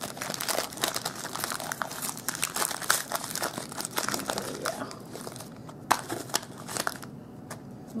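Foil wrapper of a chocolate-covered caramel being crinkled and peeled open by hand: a dense run of crackles that thins to a few scattered clicks near the end.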